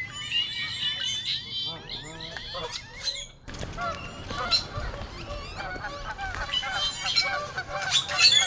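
Birds calling, many short calls overlapping one another, with a brief break about three and a half seconds in.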